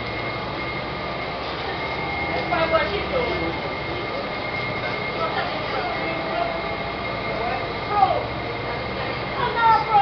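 Steady drone inside a moving city transit bus: engine and road noise, with a steady high-pitched whine running throughout.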